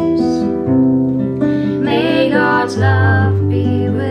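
A woman singing a slow song over a nylon-string classical guitar, with plucked chords whose bass note changes twice.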